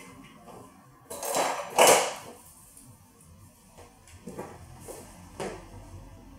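A can of dry aerosol hairspray sprayed in two short hissing bursts, about one and two seconds in, followed by a few faint soft sounds.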